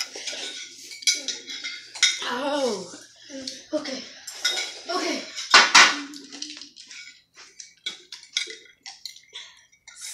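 Metal forks clinking and scraping against glazed ceramic bowls, a run of short sharp clicks that thickens in the second half, with a child's voice in the first half.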